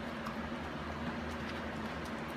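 Faint, scattered clicks and taps as puppies move about a metal kibble bowl on a concrete floor, over a steady low hum.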